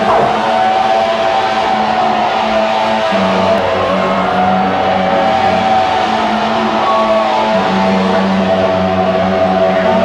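Loud electronic dance music over a rave tent's sound system: a held synth tone slides slowly up and down in pitch over a steady low drone.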